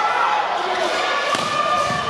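Volleyball struck during a rally: two sharp hits about one and a half seconds in and just before the end, over the steady voices of a crowd of spectators in a large gym.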